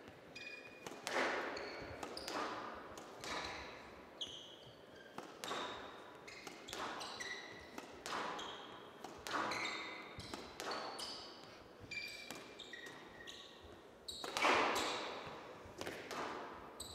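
Squash rally: the ball cracks off rackets and walls about once a second, each hit echoing in a large hall. Short high sneaker squeaks sound on the court floor between shots, and a louder burst of impact comes near the end.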